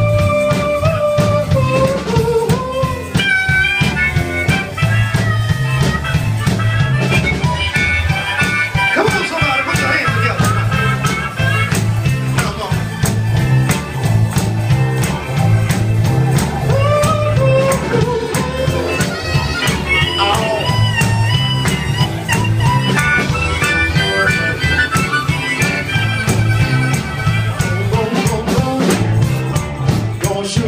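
Live blues band playing, with a harmonica solo over electric bass and drums: one long held note to open, then bent, wavering phrases.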